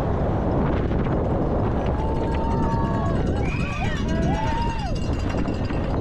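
Wind rushing over a helmet-mounted camera and a downhill mountain bike rattling at speed over a wooden boardwalk and rocky trail. Spectators shout and yell encouragement from about two to five seconds in.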